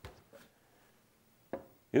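A wooden cabinet door being pulled open, with one sharp wooden knock about one and a half seconds in and otherwise little sound.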